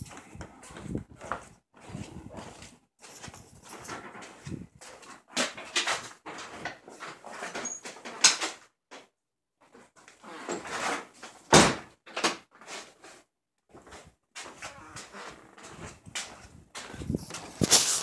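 Rustling and scraping of a handheld phone being carried with its lens covered, with scattered clicks and knocks and one sharp bang a little past the middle.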